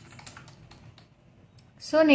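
Typing on a computer keyboard: a run of quick, light key clicks as a word is typed.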